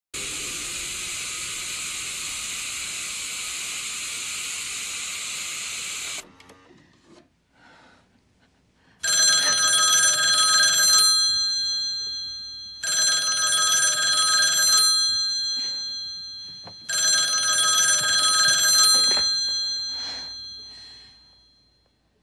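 A steady hiss for about six seconds that cuts off suddenly. After a short quiet gap, a push-button desk telephone's bell rings three times, each ring about two seconds long and fading away.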